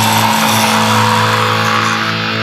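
Thrash metal band holding a sustained, distorted electric guitar chord over a dense noisy wash near the close of a song.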